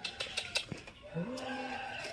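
A machete knocking into a jackfruit's rind a few times, then a low, drawn-out call that rises in pitch and holds for most of a second.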